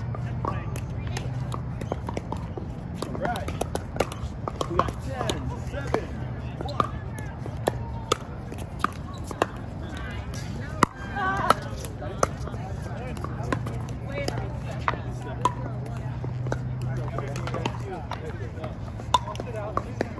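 Pickleball paddles striking the hollow plastic ball: sharp pops at irregular spacing from this rally and neighbouring courts, the loudest about 11 seconds in. Voices and a steady low hum run underneath.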